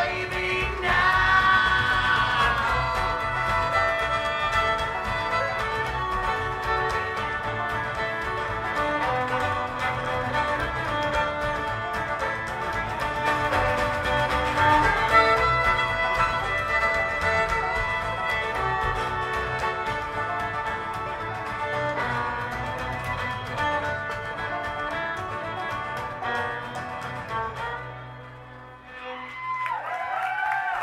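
Live bluegrass string band playing with no singing: fiddle, banjo, acoustic guitar and upright bass. The tune winds down and stops a couple of seconds before the end.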